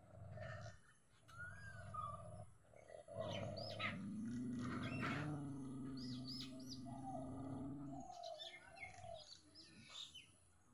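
A dog growling low and long, in drawn-out stretches with short breaks, the longest running from about three seconds in to eight. Small birds chirp in the background.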